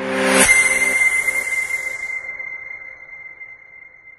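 Logo-reveal sound effect: a whoosh swells up into a hit about half a second in, over a brief low chord, then a single high ringing tone fades away slowly.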